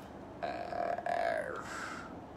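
A man's drawn-out, creaky vocal sound, like a long low "uhh" or a stifled burp, lasting about a second and a half and trailing off downward at the end.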